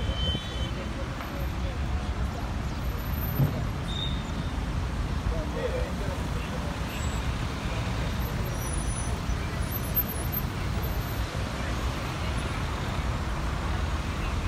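Steady city traffic noise from cars driving past, with indistinct voices of people nearby.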